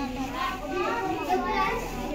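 Several children talking at once, their voices overlapping in a continuous chatter with no single clear speaker.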